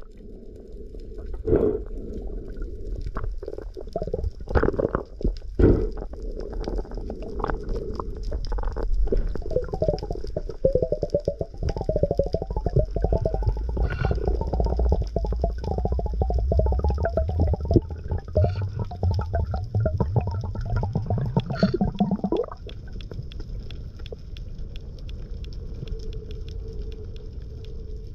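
Muffled underwater sound picked up by an action camera in its waterproof housing: a low rumble of water movement with many scattered clicks and crackles. It quietens to a low hum about three-quarters of the way through.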